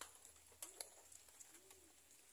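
Faint cooing of a dove, a few short low rising-and-falling notes, over near silence with soft scattered clicks.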